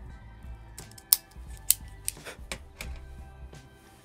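Cigarloong V-cut cigar cutter clicking shut on the head of a belicoso cigar, making a clean cut: two sharp snaps about a second in and half a second apart, then several lighter clicks. Soft background music plays underneath.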